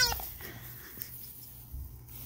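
Green squeaky toy ball giving a short warble that falls in pitch, about a quarter of a second long, right at the start as the dog nudges it and sets it rolling.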